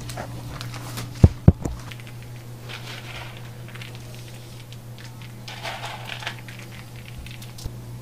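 Two sharp knocks about a second in, then soft scraping and rustling as milk chocolate is spread on a work table and pecans are scattered over it by hand, over a steady low hum.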